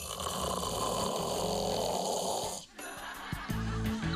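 A person snoring: one long, loud snore lasting about two and a half seconds that cuts off abruptly, followed by background music.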